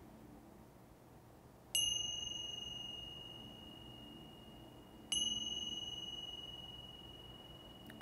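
A small hand chime struck twice, about three seconds apart, each strike ringing a single clear high tone that fades slowly. It signals the end of the final relaxation.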